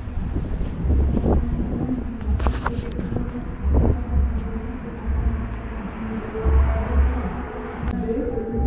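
Street ambience picked up by a handheld phone while walking, with dull low thumps about once a second from the walker's steps jostling the microphone. Faint music is heard, growing louder toward the end.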